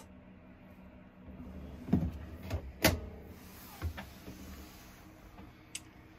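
A kitchen cabinet drawer on soft-close slides sliding shut, with a low rolling rumble and a couple of sharp knocks about two to three seconds in.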